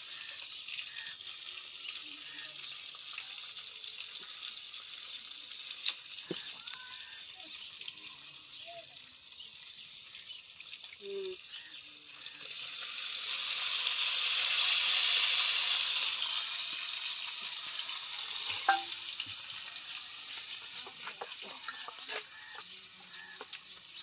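Tomato, garlic and cumin masala sizzling in a pot over a wood fire. About halfway, dal is poured in and the sizzle swells loudly for a few seconds before settling back. A couple of sharp utensil clicks.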